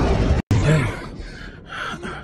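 A loud low rumble of a jet airliner flying low, cut off suddenly under half a second in; then a man gasping and breathing hard in short, repeated breaths.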